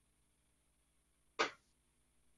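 Near silence on a video-call audio feed, broken about one and a half seconds in by a single short, sharp sound that dies away quickly.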